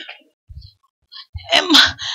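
A woman's short, loud, breathy vocal outburst into a handheld microphone about one and a half seconds in, after a near-quiet pause.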